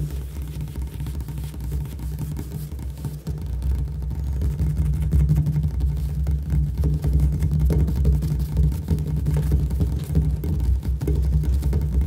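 Fast, continuous fingertip and fingernail tapping and drumming on a granite countertop, the strokes so close together that they run into a dense, bass-heavy patter. It grows louder about four seconds in.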